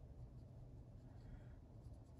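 Near silence: the faint scratching of a cotton swab rubbing tea onto paper, over a low steady room hum.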